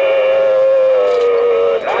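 A long held tone with several overtones, sinking slowly in pitch and cutting off near the end.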